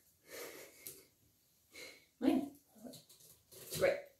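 A few short, breathy bursts of a person's breath or voice with gaps between them, the loudest about two seconds in and another just before the end.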